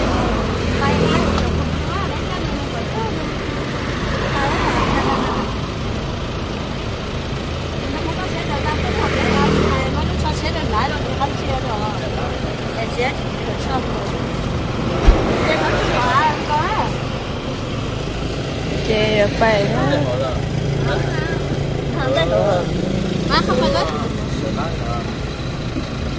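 Vehicle engine idling steadily, with a single sharp knock about fifteen seconds in.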